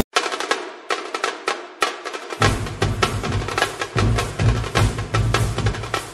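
Dance music track led by sharp drum hits, with a deep bass coming in about two and a half seconds in.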